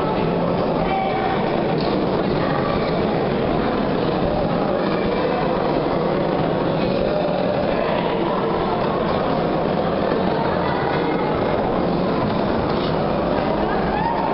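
Steady hubbub of a crowd in a sports hall, many voices talking at once with a constant echoing murmur.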